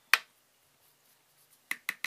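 Sharp plastic clicks from a small glitter jar and a plastic measuring spoon being handled over a plastic tub. There is one loud click just as it begins, then two quick taps near the end.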